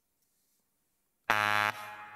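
After more than a second of silence, a quiz contestant's buzzer sounds once, about a second and a half in. It is a short, flat electronic buzz, strong at first and then fading.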